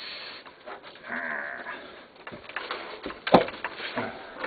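A dog whining, one wavering cry about a second in, followed a little after three seconds by a single sharp click.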